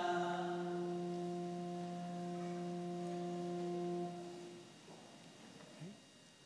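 Voices singing a chant finish on one long held note, which fades out about four seconds in, leaving faint room sound.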